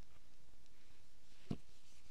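Quiet room tone with a steady faint hiss, broken by a single soft low thump about one and a half seconds in.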